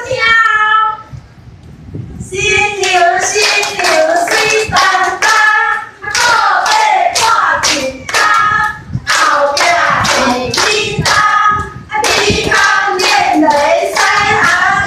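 A group singing a song together with hand-clapping keeping a steady beat, starting about two seconds in.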